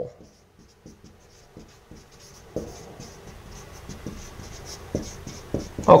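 Dry-erase marker writing on a whiteboard: a run of short, faint scratchy strokes.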